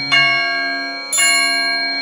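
A bell struck twice about a second apart, each stroke ringing on and fading, in the instrumental interlude of a Hindi devotional song.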